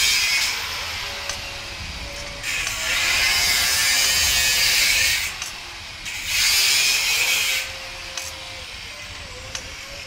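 Homemade spring rolling machine running: its electric motor turns the threaded shaft with a harsh, scraping mechanical noise that comes in runs, stopping about half a second in, running again from about two and a half to five seconds, and once more briefly around seven seconds.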